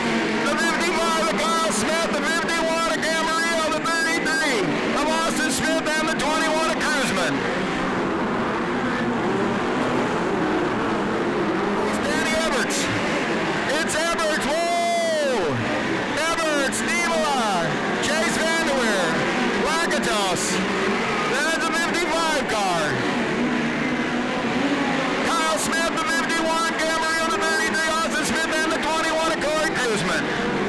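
Several midget race cars' engines running hard on a dirt oval, their pitch rising and falling over and over as the cars pass through the turns. Rapid crackling runs through the engine sound at the start and again near the end.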